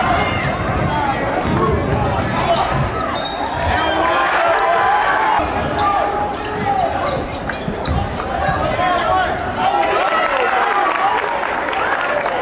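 Basketball bouncing on a gym's wooden court during play, under the crowd and players talking and shouting over one another.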